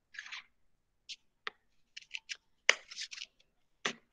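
Scissors cutting pieces of a paper-pulp egg carton: a string of short, crisp snips at irregular intervals, the first slightly longer and rustling.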